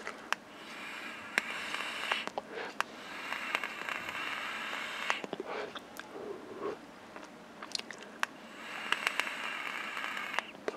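Mouth-to-lung draws on a Joyetech Exceed Edge pod vape: three soft airy hisses, each a second or two long, as air is pulled through the narrow airhole, with small mouth clicks and lip smacks between them.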